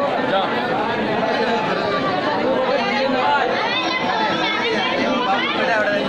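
Crowd chatter: many people talking over one another at a steady level, with no single voice standing out.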